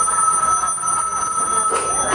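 A telephone ring on the playback soundtrack: one steady electronic ring that stops a little before the end.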